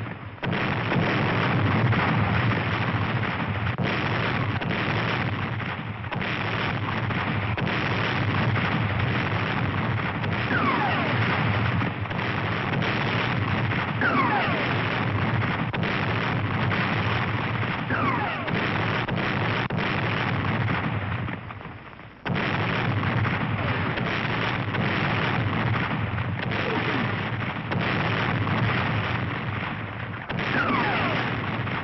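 Battle soundtrack of a mortar barrage: dense, continuous explosions and gunfire, with several short falling whistles of incoming rounds. The din drops out briefly about two-thirds of the way through, then resumes at full level.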